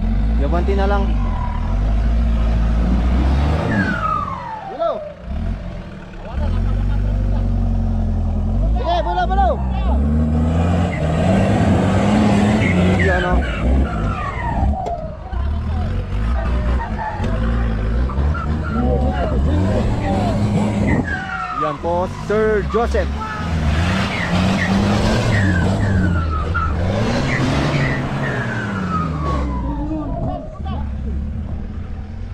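Off-road 4x4 SUV engine revving hard under load as it climbs over dirt mounds, the revs rising and falling again and again, with a short lull around five seconds in.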